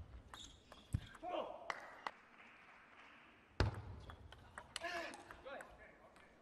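Table tennis ball clicking sharply off bat, table and floor a few times, with two short shouted voices and a heavy thud about three and a half seconds in.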